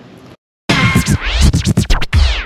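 Short electronic music sting of DJ record scratches sweeping up and down in pitch over a heavy bass beat, starting suddenly about two-thirds of a second in after a brief silence.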